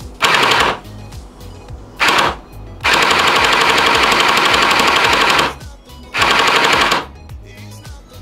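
JinMing M4A1 gel blaster's Gen 8 electric gearbox firing gel balls in full-auto bursts through a chronograph, at about 680 rounds a minute on a 7.4 V battery. There are four bursts, the third and longest lasting about two and a half seconds.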